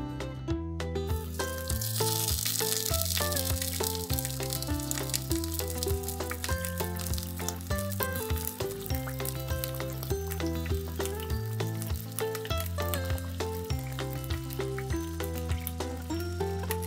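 Small pieces of fish frying in a miniature wok, a sizzle with fine crackles that starts about a second and a half in as the fish goes into the hot pan, loudest for the first couple of seconds and then settling to a lighter sizzle, over background music.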